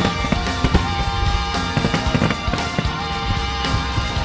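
Music with sustained notes and a beat, with fireworks bursting and crackling irregularly over it.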